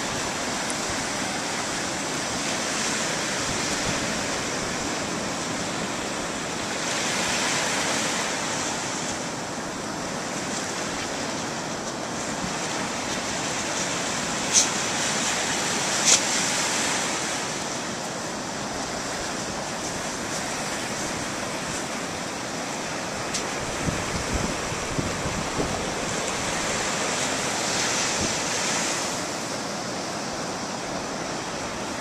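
Ocean surf washing steadily on a beach, with wind on the microphone. Two sharp clicks come about halfway through, and a scatter of small ticks follows later.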